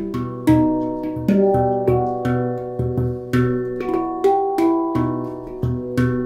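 Handpan being played by hand in an improvisation: struck steel notes ring on and overlap in a melody, about two strikes a second, with a low bass tone sounding under many of them. The strongest strike comes about half a second in.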